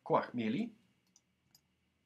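A brief spoken word, then a few faint computer clicks as a word is selected, copied and pasted in a document.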